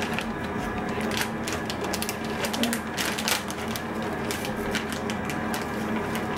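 Plastic packaging crinkling and clicking irregularly as a child handles a resealable bag of sliced cheese, over a steady low hum.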